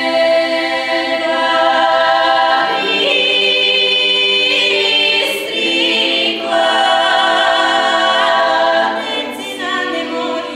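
Bulgarian women's folk choir singing a cappella, holding long sustained chords. The chords shift about three seconds in and again past six seconds, and the singing grows quieter near the end.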